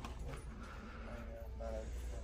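Faint, distant voices over the steady low hum of a shop's background noise.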